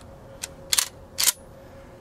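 Pardner Pump Protector 12-gauge pump-action shotgun being racked: two sharp metallic clacks about half a second apart as the slide goes back and forward, chambering a round.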